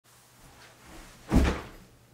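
A single dull thump about a second and a half in, after faint rustling: a person dropping into an office chair.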